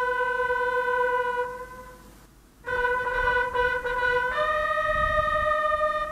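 A bugle sounding a ceremonial salute for a police guard of honour: a long held note, a short break about two seconds in, the same note again, then a step up to a higher held note around four and a half seconds in.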